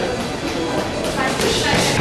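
Spectators and ringside voices shouting over one another during a boxing bout, a steady din of overlapping voices with no single clear speaker.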